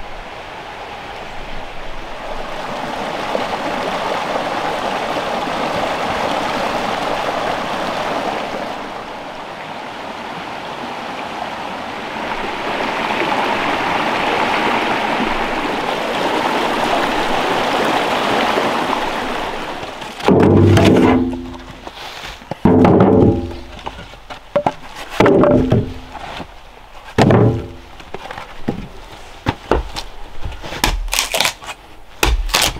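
Creek water rushing over rocks, a steady noise that swells and dips for about twenty seconds. Then a hatchet splitting kindling on a wooden chopping block: about four sharp knocks some two seconds apart, each ringing briefly.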